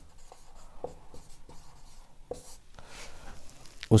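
Marker pen writing on a whiteboard: a run of short, faint strokes and taps as words are written out.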